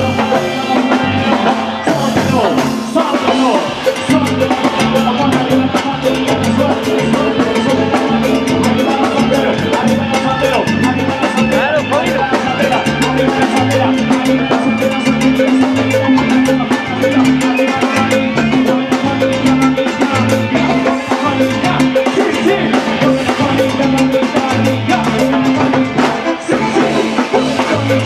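Live band music played loud and without a break: timbales and cymbals keep a busy beat over electronic keyboard and electric guitar.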